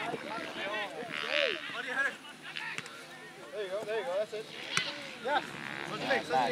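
Distant voices of soccer players and spectators calling out across an open field, with a single sharp knock about five seconds in.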